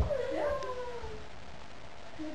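A young child's short wordless vocal sound about a second long, gliding down in pitch, then quiet room noise.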